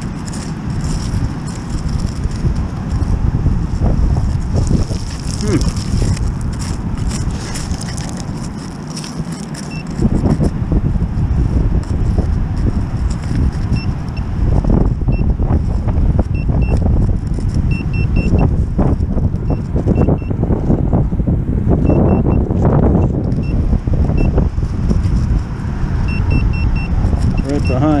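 Stones and sand being scraped and shifted by a gloved hand probing with a handheld metal-detecting pinpointer, over a loud low rumble. From about halfway through, the pinpointer gives short repeated high beeps.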